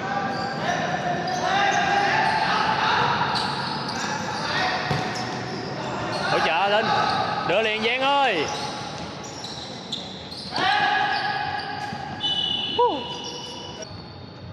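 Futsal game sounds on a wooden indoor court: the ball is kicked and bounces on the floor, shoes squeak, and players shout. All of it echoes in a large hall, with a sharp hit near the end.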